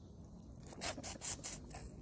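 Close-miked eating: a handful of short, sharp smacking and sucking mouth noises as grilled seafood is bitten and sucked off the fingers, mostly in the second half.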